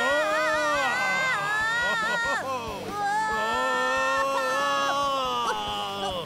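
Two long, wavering cartoon voice cries, each held for about two and a half seconds; the second starts about three seconds in.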